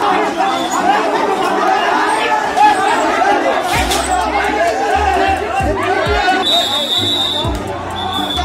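A crowd of men shouting and arguing over one another in a scuffle. Background music with deep bass notes comes in about halfway through, and a high steady tone joins near the end.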